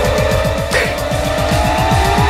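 Comic background music cue: a long sliding tone that falls and then slowly rises again, over a fast pulsing bass.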